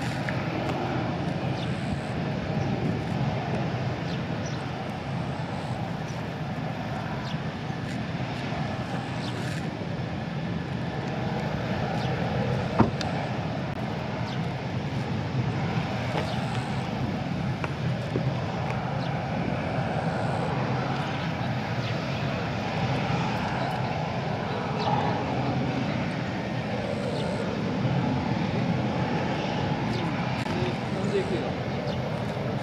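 F-16 fighter jets taxiing with their jet engines running: a steady engine noise that holds level throughout. A single sharp click sounds about 13 seconds in.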